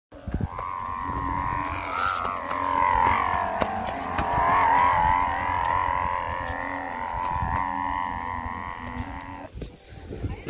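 A large chong kite's hummer (dak) droning in the wind: a steady buzzing tone that wavers up and down in pitch, with a low rumble beneath. It cuts off shortly before the end.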